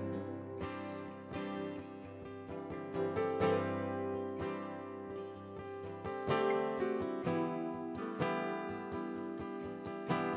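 Instrumental worship-song passage with no singing: two acoustic guitars strumming chords in a steady rhythm, with piano accompaniment.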